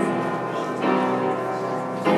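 Church bells pealing, a new strike about once a second, each ringing on into the next.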